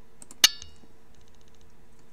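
A single sharp clink with a short ringing tail about half a second in, followed by a quick run of faint high ticks.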